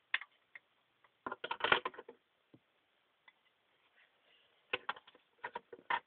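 Plastic clicks and clatter of a pink toy oven being opened and toy bowls knocking into it. The sound comes in two clusters, the louder one about a second and a half in and another near the end.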